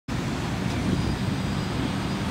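Steady low rumble of distant road traffic in open-air city ambience.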